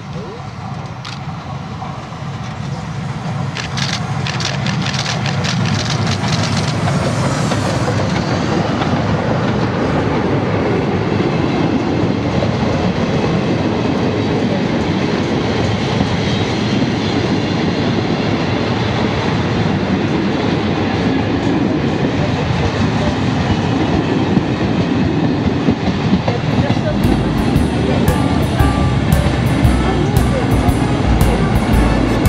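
Steam locomotive 140 C 38 approaching and passing close by, growing louder over the first several seconds, then its passenger coaches rolling past with wheels running over the rails. About 27 seconds in, the trailing diesel locomotive BB 67615 passes with a deep engine rumble.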